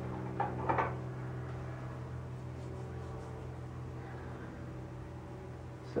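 A steady low electrical hum, with a couple of faint short sounds just under a second in.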